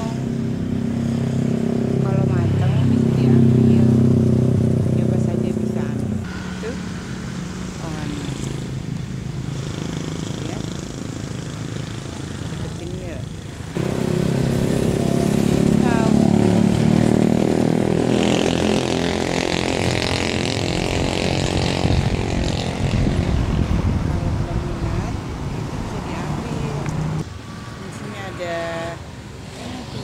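An engine running with a steady drone. It drops off abruptly about six seconds in, comes back just before the middle, and drops again near the end.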